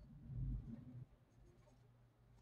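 Handling noise of a small paintbrush on a salt-dough ornament held in the hand: faint scratchy brush strokes, with a low muffled bump lasting about half a second near the start as the hand and ornament shift.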